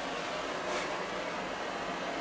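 BBT-1 culinary torch head on a butane canister burning with a steady hiss from its small blue flame, with a brief sharper hiss a little under a second in.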